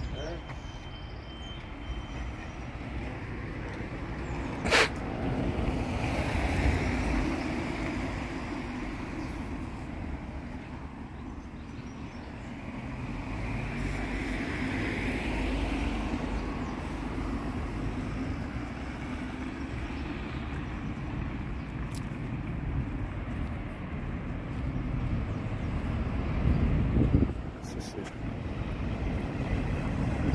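Road traffic passing now and then, in slow swells of vehicle noise over a steady low rumble, with a sharp click about five seconds in.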